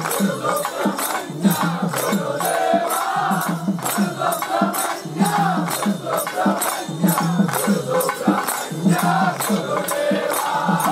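A crowd of men singing an Ayyappa devotional bhajan in chorus over a quick, steady beat of hand claps and rattling percussion.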